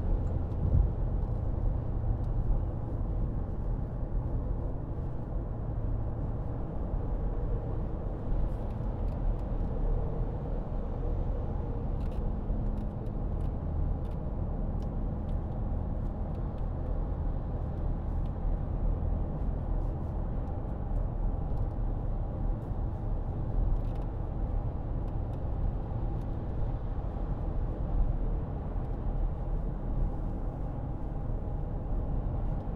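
Steady low drone inside the cabin of a 2013 Porsche Cayenne 3.0 V6 diesel cruising at about 60 mph on the motorway: engine hum mixed with tyre and road noise, unbroken throughout.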